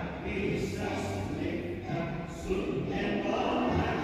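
A large group of children singing together in unison in a school hall.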